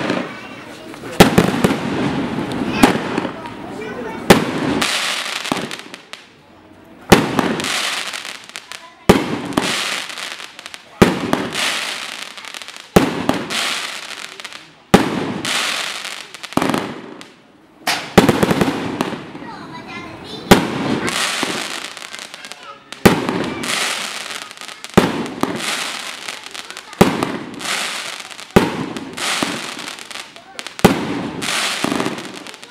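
A 36-shot firework cake firing its shots in sequence: a sharp report roughly every two seconds, each followed by a fading hiss of the burst.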